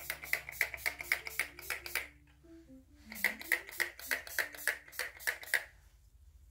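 Pump spray bottle of facial mist being spritzed at the face in quick short puffs, several a second, in two runs with a brief pause between them.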